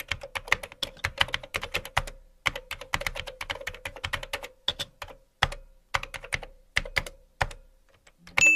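Computer keyboard typing: rapid keystroke clicks, several a second, in short runs with brief pauses, stopping near the end.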